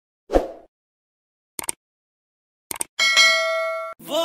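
Sound effects: a single dull hit, then two pairs of quick clicks about a second apart, then a bright bell-like ding that rings and is cut off near the end.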